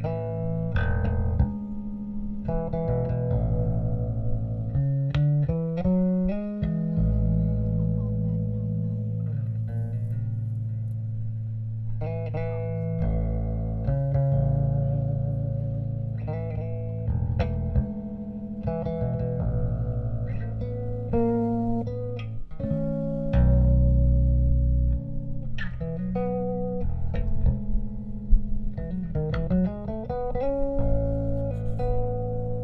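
Live band music through PA speakers, led by an electric bass guitar playing sustained low notes, with guitar on top.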